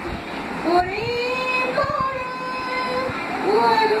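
An elderly woman singing unaccompanied in long held notes that slide up and down in pitch.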